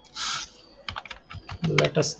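Computer keyboard typing: a short hiss, then a quick run of key clicks over about a second, as a search term is typed. A voice starts speaking near the end.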